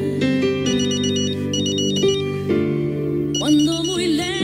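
Mobile phone ringing with a repeated electronic beeping ringtone, its short high phrases recurring several times, over a soft ballad whose singer comes in near the end.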